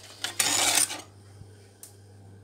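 A wire whisk stirring milk, egg yolks, sugar and flour in an enamel pot, scraping against the pot: one brisk half-second stroke near the start, then a single light click near the end.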